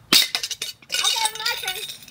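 A hard strike on a metal globe piggy bank: one sharp, loud clink just after the start, with a few smaller clicks after it. About a second in, a raised voice shouts.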